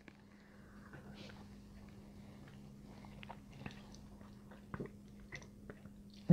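Faint sipping and swallowing sounds as two people taste shots of spiced rum, with a few small clicks over a low steady hum.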